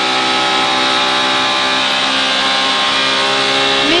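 Ford Fiesta RWD rally car's engine running at steady, high revs with an almost constant pitch as it is held flat along a straight, heard from inside the cabin over tyre and road noise.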